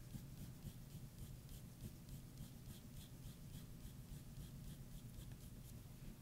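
Pencil shading on toned paper: faint, quick, even strokes, about four a second.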